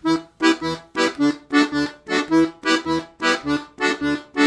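Ottavianelli 72-bass piano accordion playing a lively phrase of short, separate notes in a steady rhythm, with a Celtic sound.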